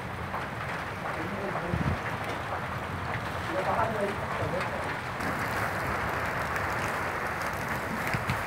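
Hail falling in a steady, dense patter of hailstones striking the ground and plants, with voices faint behind it. About five seconds in the patter grows brighter and harsher.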